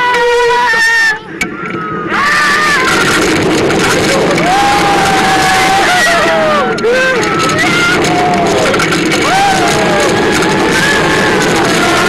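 Riders screaming and yelling in long, wavering cries over the steady rush of wind and track noise from a launched roller coaster at speed.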